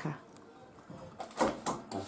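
Kitchenware being handled at a steel saucepan: two short sharp knocks close together about one and a half seconds in.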